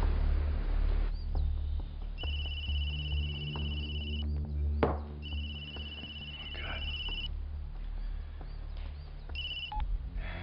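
A phone ringing: a steady high electronic ringtone in rings of about two seconds with a second's gap between them, the third ring cut off short as the call is answered.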